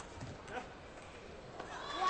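A table tennis ball is struck sharply at the start and once more faintly about half a second later. The arena stays fairly quiet until, near the end, the crowd starts shouting and cheering as the point is won.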